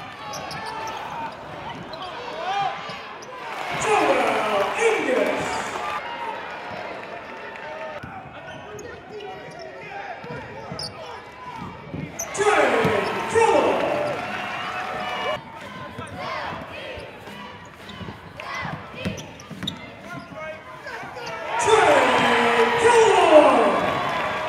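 Basketball game sound in a gym: a ball bouncing on the hardwood court, with louder bursts of shouting voices about 4, 12 and 22 seconds in.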